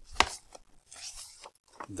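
A book's page being turned: a sharp tap about a fifth of a second in, then paper rustling.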